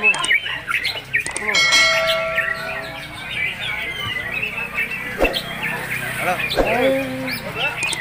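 Many caged songbirds, chiefly white-rumped shamas (murai batu), singing and chirping over one another, with a steady held whistle-like note for about a second near the start. Voices murmur underneath.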